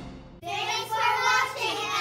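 The tail of the theme music fades out, and about half a second in a group of young girls' voices call out loudly together in a sing-song chant.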